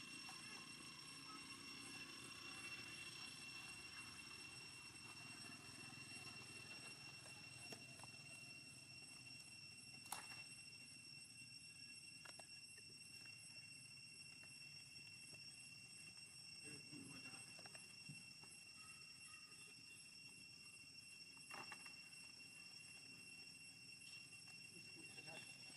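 Near silence: faint outdoor ambience with a steady high whine and a couple of soft clicks, one about ten seconds in and one near the end.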